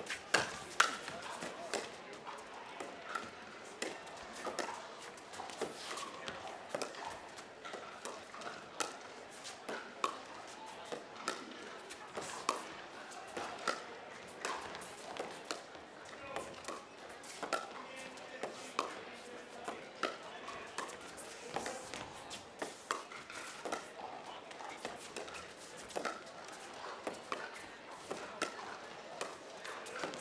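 Pickleball rally: hard paddles striking a plastic ball back and forth, a sharp pop about every half second to second, over the murmur of an arena crowd.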